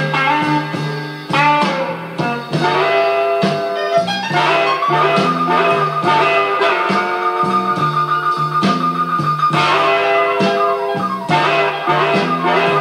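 Blues band playing a barrelhouse blues instrumental passage: a steady repeating bass line under guitar and horns, with one long held high note from about five to nine and a half seconds in.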